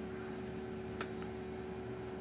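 A single sharp click about a second in, as a multimeter probe tip is pushed against a small battery's terminal, over a steady faint hum.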